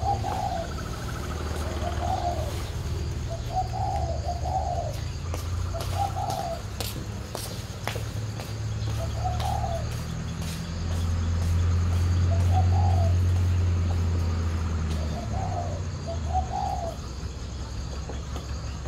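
Spotted doves cooing, short coos repeated every second or two, over a steady low engine rumble that grows loudest about midway through.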